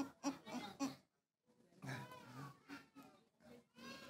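A woman laughing in short, rhythmic 'ha-ha' pulses, about four a second, that stop about a second in. After a brief dropout, fainter wavering sound follows.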